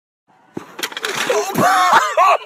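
A track hurdle being struck and clattering over as a runner crashes into it, with a couple of sharp knocks. Right after come loud shouting voices with rising and falling pitch, the loudest part.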